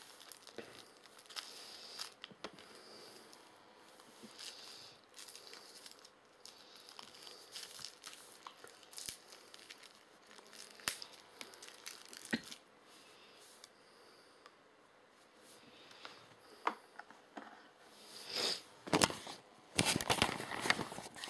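Crinkling and tearing of a drinking straw's wrapper as the straw is unwrapped and pushed into a chilled coffee cup: scattered handling noises with sharp clicks, louder near the end.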